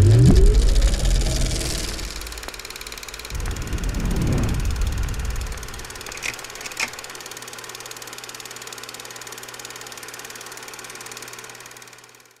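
Logo-reveal sound design: a loud rising sweep and whoosh, a second swelling whoosh a few seconds later, two sharp clicks, then a steady low hum that fades out at the end.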